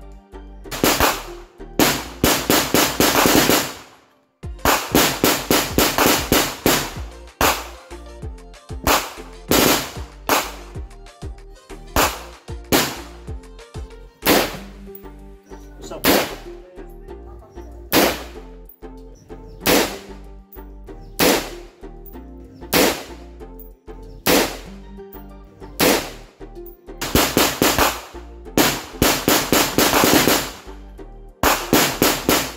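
Repeated gunshots from handgun and rifle fire, some in quick strings, mixed with background music that has a steady beat.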